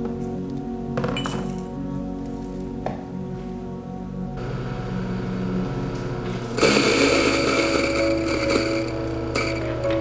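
Background music, with a couple of light clinks early on. Then an electric coffee grinder runs for about three seconds, louder than the music, and cuts off near the end.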